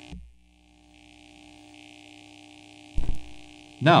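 Steady low hum with faint hiss from an old 8-track cartridge soundtrack, broken once by a short, loud, low thump about three seconds in.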